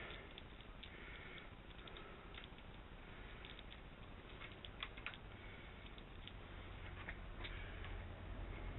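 Faint, irregular small clicks and scrapes of metal bolts being threaded by hand into a Sky-Watcher EQ8 equatorial mount head, a few slightly sharper clicks around the middle.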